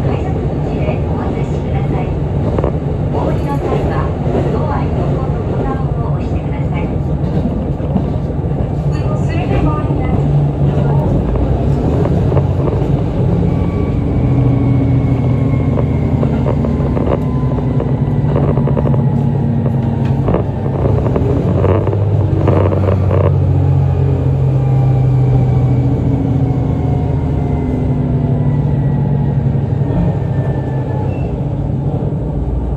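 ET122 diesel railcar running on the rails, heard from inside: a steady engine and wheel drone with scattered knocks in the first part, and a faint whine that slowly falls in pitch through the second half as the train slows for a station.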